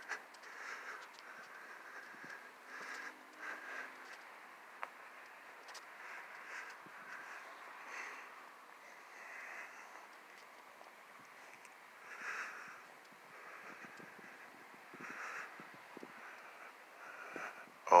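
Faint breathing close to a phone's microphone, a few soft breaths over a low steady hiss, with one small click about five seconds in. No thunder is heard with the lightning flashes.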